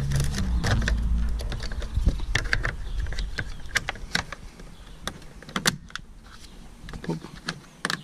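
Plastic door-trim parts of a Nissan Pathfinder door panel clicking and knocking as the armrest cover is fitted by hand, ending with the cover snapping into place. A low steady hum sits under the first couple of seconds.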